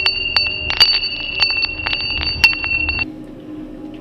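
A steady, high bell-like ringing made of two held tones, peppered with irregular sharp clicks. It cuts off suddenly about three seconds in.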